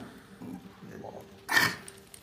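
A small red bolt cutter being squeezed on a steel chain, with faint low straining grunts and one short, sharp burst about one and a half seconds in. The bolt cutter is suspected to be too small for the chain.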